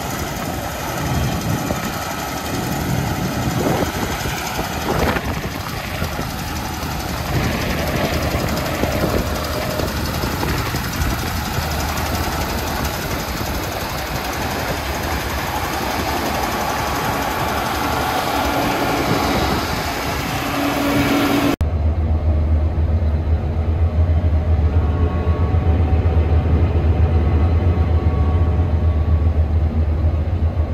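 Gleaner S98 combine harvesting wheat: its engine and threshing run with a steady rushing noise, heard from out in the field. About two-thirds of the way through it cuts to a strong, steady low engine drone heard inside the cab, with the higher sounds muffled.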